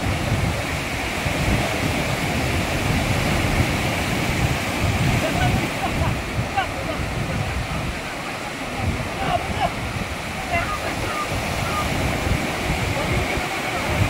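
Surf washing in over a rocky shore and the shallows: a steady rushing of breaking waves, with people's voices calling faintly through it.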